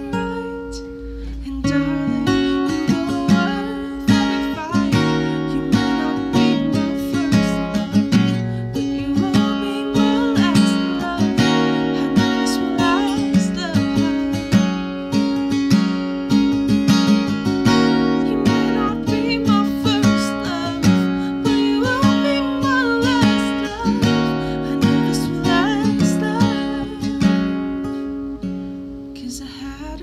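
Acoustic guitar strummed in a steady, even rhythm as a live solo song accompaniment, with a woman's voice singing over it at times.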